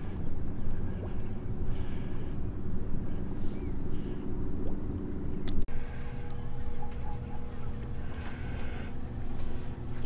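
Boat engine running with a steady low rumble and hum. The sound breaks off abruptly about five and a half seconds in, and a similar rumble carries on with a faint, steady, higher hum.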